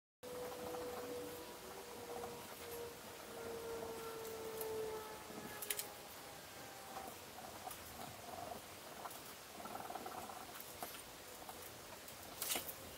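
Pen tracing around paper pattern pieces on the suede back of leather: faint scratching and rubbing, with a few light clicks and taps as the pieces are moved.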